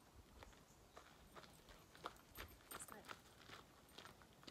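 Faint footsteps crunching on gravel, a person walking with a dog on a lead, heard as an irregular run of short scuffs that thickens from about a second in.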